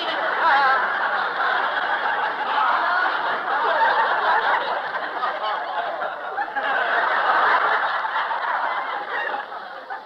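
Studio audience laughing at length in swelling waves after a joke, easing off near the end, heard through a narrow-band old broadcast recording.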